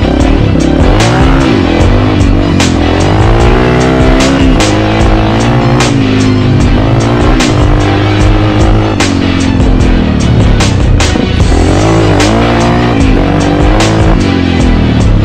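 Music with a steady beat laid over a Yamaha TT350 dirt bike's single-cylinder four-stroke engine revving up and down as it rides.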